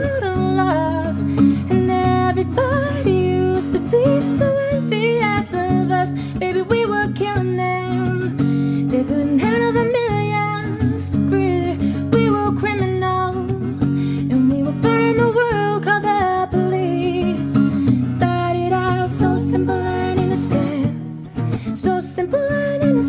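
A woman singing a pop melody with sliding vocal runs over acoustic guitar accompaniment.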